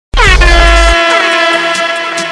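Trap beat opening with a DJ air-horn sound effect: a loud horn blast whose pitch slides down at first and then holds steady, over a deep 808 bass note that drops out about a second in.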